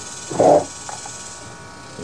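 The recoil starter rope of a Poulan 2150 chainsaw is pulled once about half a second in, giving a short whirring rasp as the engine turns over against compression that is pretty tight. A faint steady hum lies underneath.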